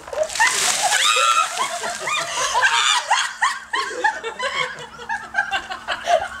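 A bucket of ice water poured over a seated person, splashing down in the first second, followed by laughter.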